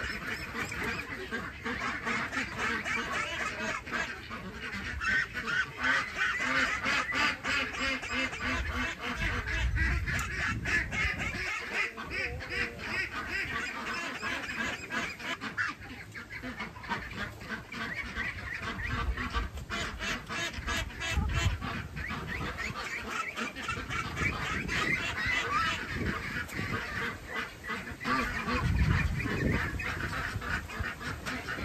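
A flock of domestic ducks quacking and chattering without a break, many calls overlapping, as they wait to be fed. A few dull low thumps come in now and then.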